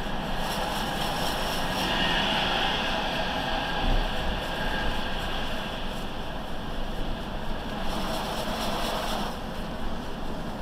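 Steady road and traffic noise heard from inside a car's cabin as it drives a city street, a little louder around two seconds in and again near the end.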